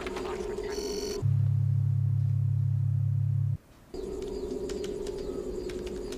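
Synthesized electronic tones: a steady hum, a short high electronic chirp about a second in, then a loud, low, steady drone for about two and a half seconds that cuts off suddenly before the hum comes back.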